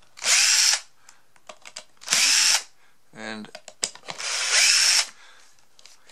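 Cordless drill-driver spinning in three short bursts, the last about a second long, backing screws out of a plastic gearbox housing, each burst starting with a rising whine as the motor spins up.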